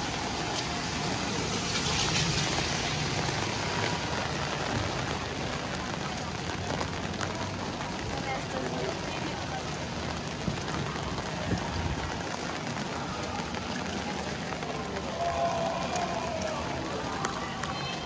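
Steady rain falling on a wet city street and pavement: an even hiss and patter throughout, swelling briefly about two seconds in, with passers-by talking faintly.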